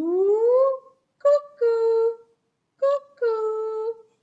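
A woman's singing voice: one rising vocal slide lasting about a second, then two sung calls, each a short higher note falling to a longer held lower one.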